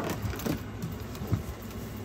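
Craft supplies being rummaged through and handled: a sharp rustle or knock right at the start, then a few softer scattered rustles and knocks.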